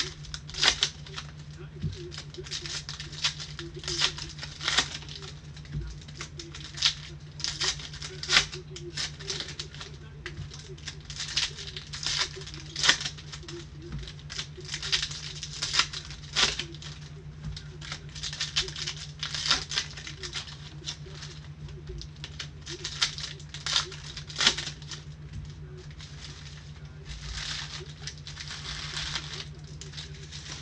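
Foil trading-card pack wrappers crinkling and tearing in gloved hands as packs are ripped open, in irregular short crackly bursts.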